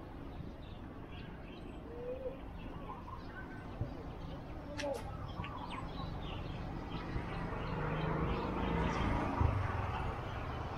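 Outdoor ambience with birds calling: a few short chirps and glides over a steady low background noise. The background noise swells louder in the second half.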